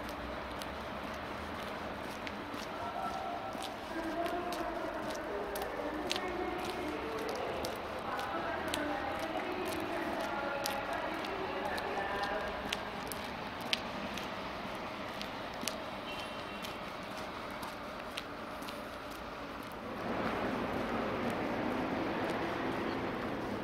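Outdoor ambience: indistinct voices some way off over a steady background hum, with scattered light clicks. About twenty seconds in, a louder rush of vehicle noise comes in.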